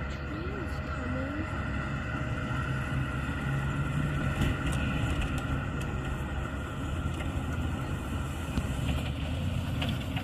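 A 2003 Toyota Land Cruiser's 4.7-litre V8 running as the SUV drives across loose sand, a steady low engine hum that swells slightly about four seconds in.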